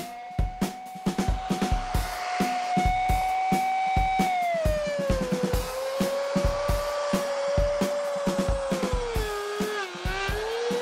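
Backing rock music with a drum beat, over the steady high whine of a router driving a three-inch surface-planing bit; the whine sags in pitch as the bit bites into the slab and epoxy, then climbs back.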